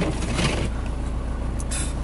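Honda car's engine idling, heard from inside the cabin as a steady low hum.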